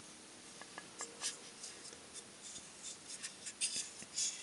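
Faint clicks and light scrapes of hands handling a small all-plastic model and its plastic display stand, growing busier near the end.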